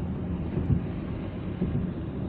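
Steady low road rumble heard inside a moving car's cabin at highway speed: tyre and engine noise.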